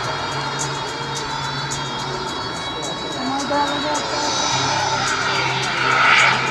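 Turbine-powered radio-control F-15 model jet flying, a steady jet rush that swells near the end as it comes closer, with music playing over the public-address system.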